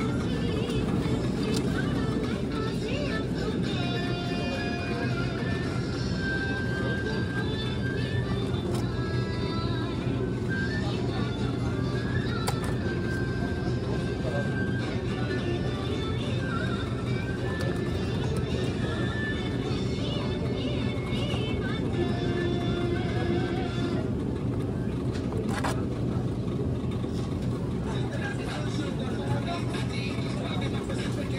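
Music playing with short held notes over a steady low hum and indistinct voices.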